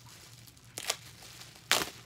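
Plastic bubble wrap crinkling as it is handled and pulled open, with two short, sharp crackles, the second louder, near the middle and near the end.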